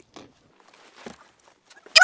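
Faint rustling and a few light knocks as a person climbs into an SUV's rear seat, then a loud, wavering vocal exclamation right at the end.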